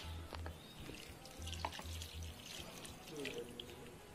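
Water poured from small glass beakers onto potting soil in plastic pots, a faint trickle and splash.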